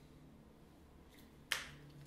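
A single sharp plastic click about a second and a half in, from a sports-drink bottle's dispensing cap being handled and opened, against faint room tone.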